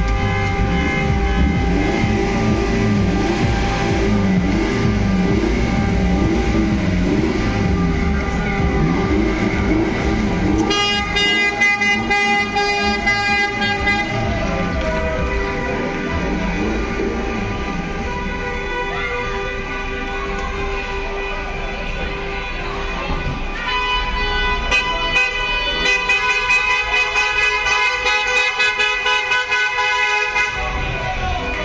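Many car horns honking at length in celebration, several held tones sounding at once, with music playing under them. Bursts of rapid, stacked honking come at about eleven seconds and again from about twenty-four seconds on.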